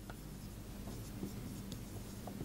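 Marker pen writing on a whiteboard: faint scratching strokes and small taps as the words are written.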